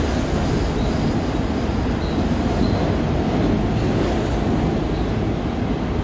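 Long Island Rail Road M7 electric multiple-unit train running into the station past the platform, a steady loud rumble of wheels and cars, with a few brief faint high squeals from the wheels.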